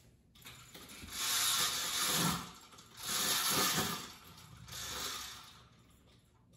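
Mesh roller shade being raised by its pull chain, the chain and clutch mechanism rattling in three pulls; the first two pulls are longest and loudest.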